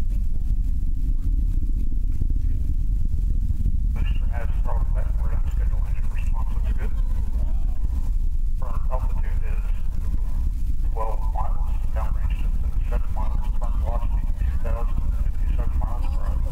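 Voices talking in the background over a steady, loud low rumble; the talk starts about four seconds in.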